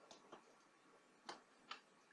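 A few faint, sharp clicks from a computer mouse, four in all, the loudest near the middle, over near-silent room tone.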